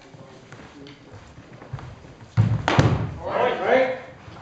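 A loud heavy thump about two and a half seconds in, with a sharp crack close behind it, ringing briefly in a large hall; a short spoken call follows near the end.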